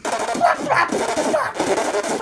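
A person blowing a raspberry into a hand pressed over the mouth: a loud, rough, buzzing mouth noise that starts abruptly and carries on without a break.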